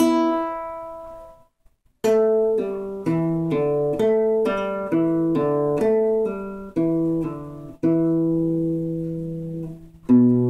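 Acoustic guitar played in a pull-off exercise: notes ring and fade out to a brief silence about a second and a half in, then a steady run of plucked notes and chords resumes at two seconds, with a new note about every half second and one long held note near the end.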